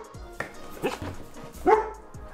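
Dog barking: three short barks, the loudest near the end.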